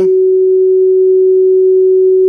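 Klipsch RP-600M bookshelf speakers playing a single loud, steady sine tone from a signal generator. The tone, which the repairer calls a buzzing, is a test signal run to provoke the intermittent crack from a faulty electrolytic capacitor in the crossover.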